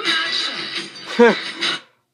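A song playing through the RS Media robot's small built-in speakers, cutting off suddenly near the end.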